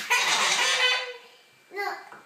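A loud, breathy vocal outburst, like a shriek of laughter, lasting about a second. A short gliding vocal sound follows near the end.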